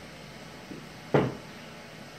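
A child's cartwheel on a carpeted floor: a soft bump, then about a second in one sharp thump as his feet land.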